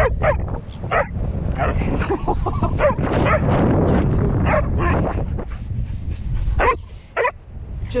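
Australian kelpie giving many short, high yips and whines, excited while being told to take something gently, with wind on the microphone underneath.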